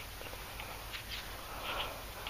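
Faint outdoor background with a few soft, short high chirps scattered through it.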